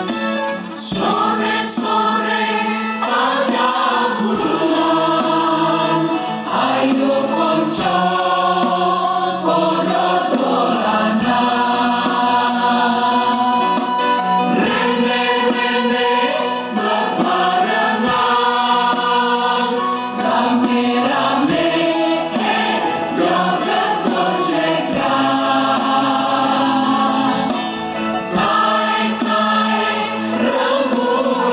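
Indonesian choir singing a song in harmony through stage microphones, the voices continuous and in several parts.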